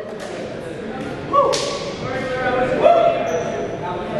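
Voices calling out in a large, echoing gymnasium, with a sharp smack about a second and a half in.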